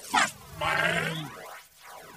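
Cartoonish boing-like sound effects: two quick falling swoops, then a low buzzing note lasting under a second, all with a swirling, phased colour.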